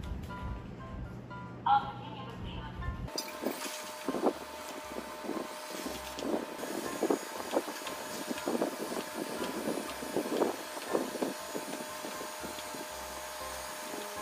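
Background music for about the first three seconds. Then a Xiaomi Mijia robot vacuum-mop 1C runs over a tabletop sweeping up biscuit crumbs: a steady motor whine with irregular clicking.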